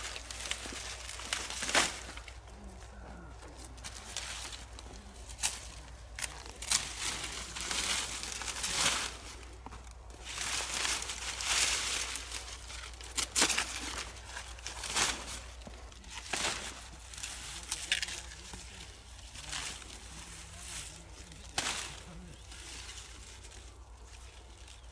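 Dry, flattened silage corn stalks and leaves crackling and rustling in irregular bursts as they are grabbed, bent and pulled by hand.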